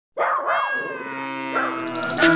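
A dog's bark opens a short music jingle. The sound starts suddenly and gives way to steady held notes.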